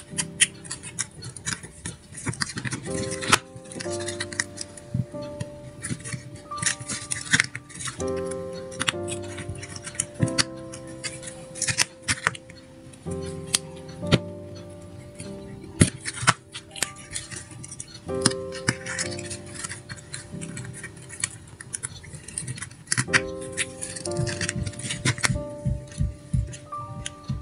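Backing paper being picked and peeled in thin strips off an adhesive sand-art board, giving many sharp crackles and ticks. Background music with a slow melody of held notes plays under it.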